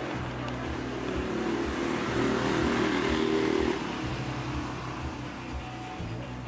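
Street traffic: a motor vehicle passes, loudest from about two to three and a half seconds in, over steady background music.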